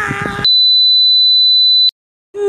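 A held voiced note breaks off about half a second in. It is replaced by a loud, steady, single-pitch high test tone, the kind that accompanies colour bars. The tone lasts about a second and a half and cuts off with a click near the end.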